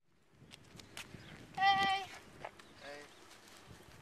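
A person's voice: a short, high, held vocal note about halfway through, and a weaker voiced sound shortly after, with a few faint clicks before them.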